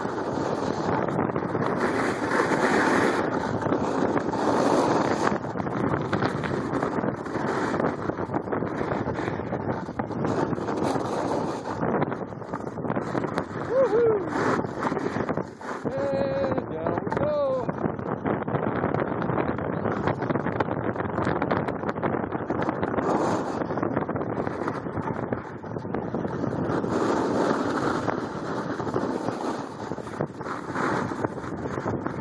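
Wind rushing over the microphone of a skier going fast downhill, surging every few seconds, with the hiss of skis on packed snow underneath.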